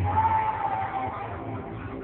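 A singer's amplified voice over backing music through PA speakers, holding one long note that sags slightly in pitch before breaking off near the end.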